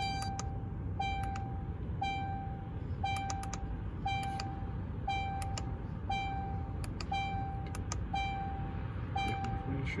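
Range Rover Evoque warning chime repeating about once a second, each chime a single steady tone lasting about half a second, over a low steady rumble. The car has its ignition on with the engine off.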